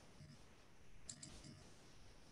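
Near silence, with a few faint, quick clicks a little after a second in.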